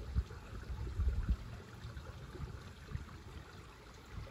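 Faint, steady trickle of water from a garden koi pond, under a low rumble on the microphone that is strongest about a second in.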